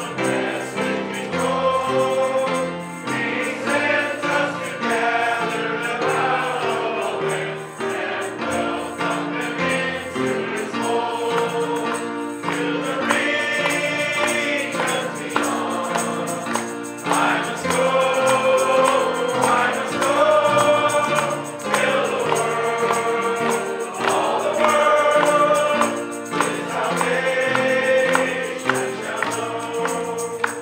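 A congregation of mixed voices singing a hymn together in harmony, in long held phrases; the song comes to its close at the very end.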